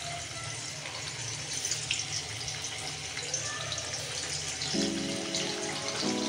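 Paneer cubes sizzling in hot oil in a kadhai, a steady frying hiss. Soft background music comes in near the end.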